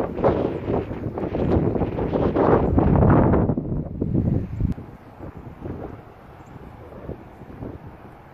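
Wind buffeting the microphone in loud, choppy gusts for the first four seconds or so, then dying down to a faint steady rush.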